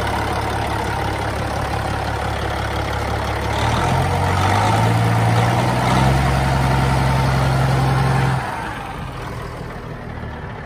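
Caterpillar diesel engine of a Peterbilt 379 running with the hood open, idling steadily at first; about four seconds in its speed rises in two steps and holds, then falls back and quietens near the end.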